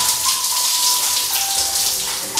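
Shower spray running steadily onto a person and a tiled floor, a continuous hiss of falling water. A soft tune of long held notes plays over it, stepping down in pitch about two-thirds of the way through.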